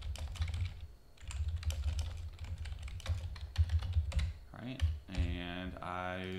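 Typing on a computer keyboard: a quick, uneven run of key clicks for about four and a half seconds. Near the end it gives way to a man's voice holding one drawn-out sound.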